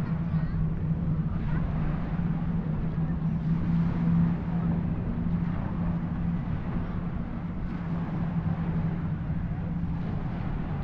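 Indistinct voices of people and children on a beach over a steady low mechanical hum, like a distant engine.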